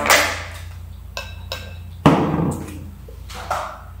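Small plastic slime tub being opened and handled: a sharp knock, a few light plastic clicks, then a duller knock about two seconds in as it is set down on the table.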